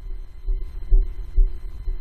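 Three soft, deep thumps about half a second apart, over a faint steady hum.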